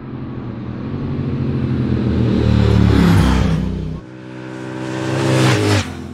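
Triumph Speed Twin 1200 motorcycles, parallel twins with a 270-degree crank, riding past on the road. The engine note builds to its loudest about three seconds in, cuts off suddenly about four seconds in, and builds again on a second pass.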